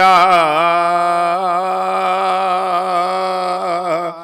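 A man's voice chanting an Urdu mourning elegy unaccompanied, holding one long note whose pitch wavers in ornaments during the first second and then steadies.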